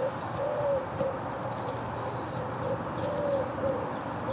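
Pigeons cooing, a run of short low notes repeating every half second or so, with faint chirps of small birds behind them.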